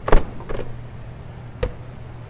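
Third-row seat of a 2013 Hyundai Santa Fe XL folding down after its pull strap is tugged. There is a loud clunk just after the start as the latch lets go, a softer knock about half a second later, and a sharp knock about a second and a half in.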